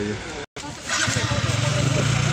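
A motor vehicle engine running with a steady low hum, coming in about a second in after a brief total dropout in the sound.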